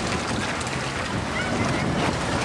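Wind buffeting a camcorder microphone: a steady rushing noise, with faint voices in the background about halfway through.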